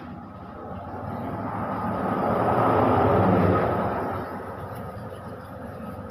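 A passing vehicle: a broad rumbling noise that swells, is loudest about three seconds in, then fades away.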